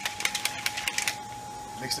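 Whey protein being shaken in a plastic shaker bottle: a rapid run of sharp clicking rattles for about the first second, thinning out before it stops.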